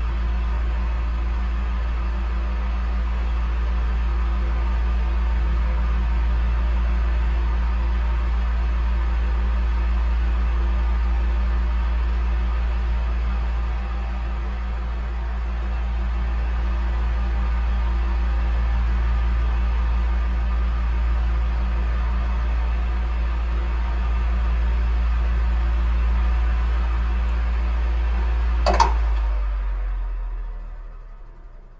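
Electric fan running: a steady low hum with a whirring drone. There is a brief sharp click about a second before the end, and then the sound starts to fade.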